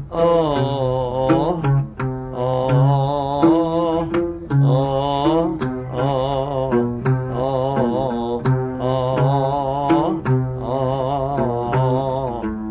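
Arabic song accompanied on the oud: plucked oud notes under a sustained, wavering melody line that falls into short repeated phrases.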